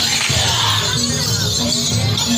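Loud, steady music accompanying a Javanese Barongan Blora procession: bright metallic clashing over a repeating pattern of low held tones.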